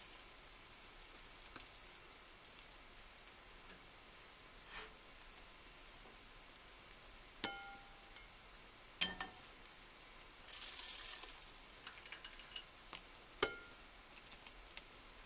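Serving spoon knocking against ceramic dishes while baked apples are lifted out: a few sharp clinks, the first one ringing briefly, with a short scrape between them. The last clink, near the end, is the loudest.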